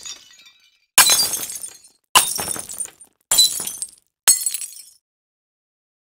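Four sharp crashes of breaking glass, a little over a second apart, each fading away within a second.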